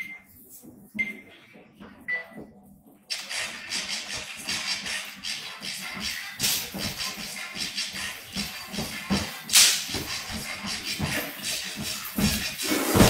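Three short high beeps a second apart, a phone's countdown timer, then a song starts playing about three seconds in and carries on. A brief loud noise comes about nine and a half seconds in.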